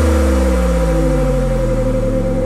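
Electronic house track in a drumless breakdown: a deep synth bass glides slowly downward in pitch under a held higher synth note.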